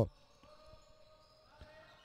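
Very faint sound of a basketball being dribbled on a hardwood gym floor during play: a few soft, scattered bounces.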